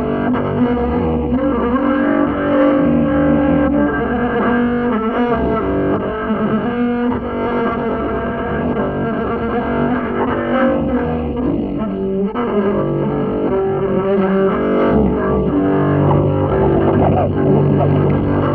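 Solo double bass playing free improvisation: a dense, continuous stream of held, overtone-rich tones.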